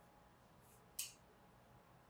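Near silence: room tone, broken by one brief sharp click about a second in.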